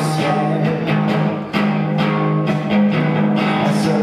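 Live instrumental passage of a French chanson song: strummed guitar in a steady rhythm under held notes, with harmonica played into the vocal microphone.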